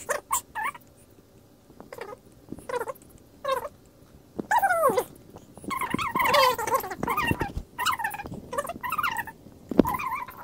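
A series of short, high-pitched vocal calls, several sliding down in pitch, with a denser run of calls in the second half.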